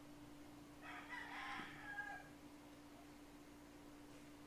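A rooster crowing faintly, one crow lasting about a second and a half, over a steady low hum.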